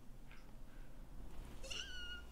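Quiet room tone, then near the end a woman's short, high, wavering squeal of delight.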